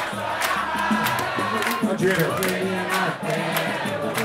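A crowd singing a samba chorus together with the roda's acoustic band, with hand clapping and percussion keeping the beat about twice a second.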